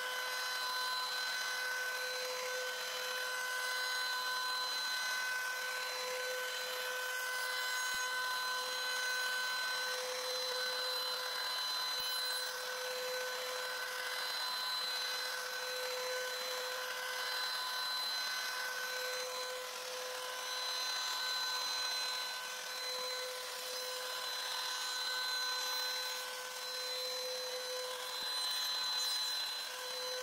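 Makita router running as the spindle of a desktop CNC, making a surfacing pass with a quarter-inch bit to reduce the thickness of a hardwood blank. A steady motor whine over the noise of the bit cutting wood, swelling and easing slightly as the bit moves across the stock.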